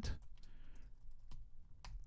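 Computer keyboard typing: quiet key clicks at an irregular pace.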